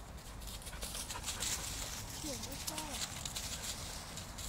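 Dogs' paws running and scuffling through dry fallen leaves, a steady crackling rustle, with a brief pitched vocal sound that bends up and down about halfway through.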